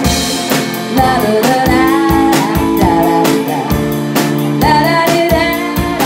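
Live rock band playing: a woman sings the lead into a microphone over electric guitar and a drum kit, with steady drum beats and a cymbal crash at the start.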